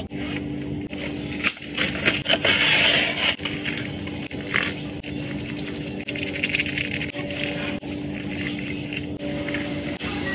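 Rustling and crinkling from handling: a nylon puffer jacket being unzipped and taken off, and plastic food packets being crinkled and torn open. The handling is loudest and busiest a couple of seconds in, over a steady low hum.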